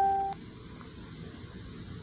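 The tail of a steady electronic beep with overtones, cutting off abruptly about a third of a second in, followed by faint steady hiss.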